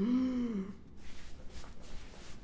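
A man's short groan, under a second long, its pitch rising a little and then falling away, a reaction to his shoulders being squeezed in a hard massage.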